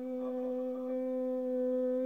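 A man's voice holding one steady sung note, pitch unwavering.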